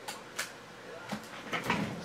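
A single short, sharp click about half a second in, followed by a few faint small handling noises.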